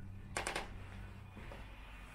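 A short rattling clatter of four or five sharp clicks in quick succession, about a third of a second in.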